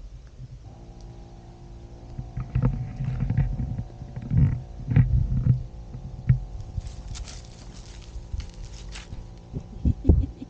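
A Key deer nosing at the camera close up: loud low rumbles and bumps from its muzzle rubbing the microphone, then fainter crackly rustling, and a loud thump near the end as its wet nose hits the lens. A steady low hum runs underneath from about a second in.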